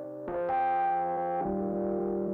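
Background music: held synthesizer keyboard chords that change twice.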